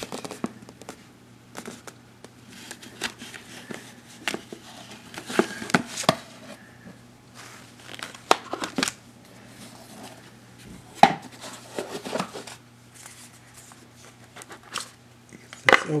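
A cardboard trading-card box being worked open by hand: irregular scrapes, taps and rustles as the lid and seal are pried and slit, with a sharper handling clatter near the end.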